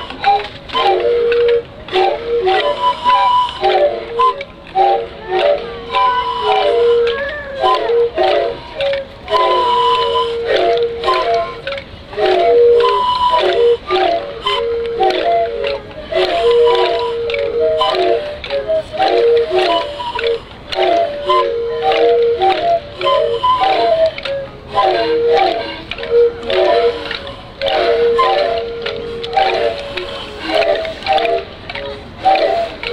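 Many bamboo whistle flutes blown by a large ensemble, playing short overlapping notes in an interlocking repeating pattern. A held note sounds again and again, with occasional higher notes and sharp clicks among them.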